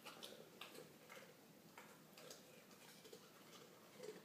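Near silence with faint, irregular clicks and smacks from a sheepdog's mouth as it licks and noses at the tile floor after eating a cookie.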